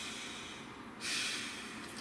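A man breathing audibly between sentences: the tail of one breath fades out, then a second, shorter breath comes about a second in.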